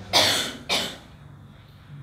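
A person coughing twice in quick succession, the first cough longer and louder than the second.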